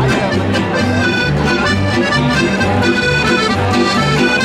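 Piano accordion playing a lively folk tune, its held chords over a steady, rhythmic bass, with an acoustic guitar strumming along.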